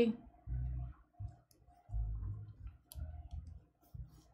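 Handling noise from knitting on circular needles: a few low, dull thuds as the work is moved about, with light clicks and ticks of the needles.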